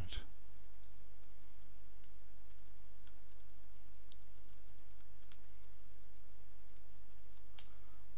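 Computer keyboard typing: a run of light, quick keystrokes with uneven gaps and a louder key press near the end, over a steady low hum.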